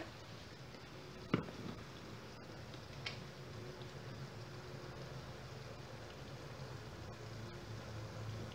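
Faint steady simmering of chicken broth in a frying pan, under a low hum, with a single sharp knock about a second and a half in and a lighter tick a couple of seconds later.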